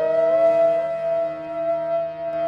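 Background music: a flute holds one long, steady note over a constant drone, after a short rise in pitch just before.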